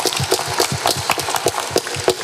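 Audience and panel applauding: many hands clapping in a dense, steady patter.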